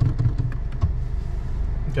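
Honda Civic Type R's turbocharged 2.0-litre four-cylinder idling steadily, heard from inside the cabin. A few light clicks come in the first second as the manual gear lever is worked into first.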